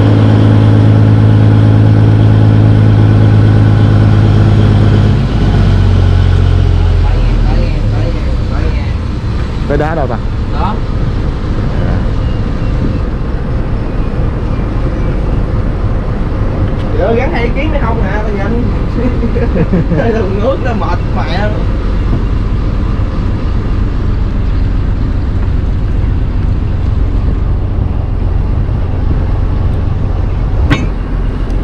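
A fishing trawler's diesel engine running under way, its steady low note loud at first and dropping in pitch and level about five seconds in, then settling to a lower rumble with wind and water noise.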